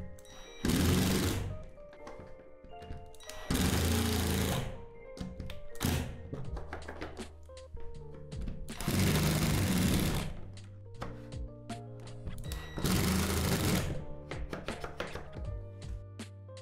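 Power drill driving four screws one after another into a plastic shed wall, each a short run of about a second, to fasten window latches.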